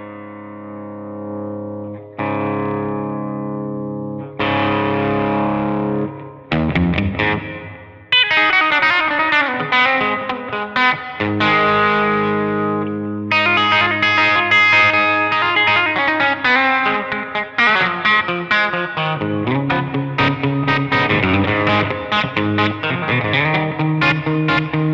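Telecaster-style electric guitar played through the drive of a Blackstar HT5 valve amp, heard through a Nux Mighty Plug amp and cabinet-IR modeller. It starts with a few held chords that ring out for about two seconds each, then moves to faster picked riffs from about six seconds in.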